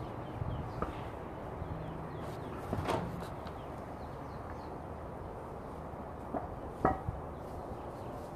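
A few scattered knocks and thumps from someone moving about on a tarp-covered roof, the loudest about seven seconds in, over a steady low rumble.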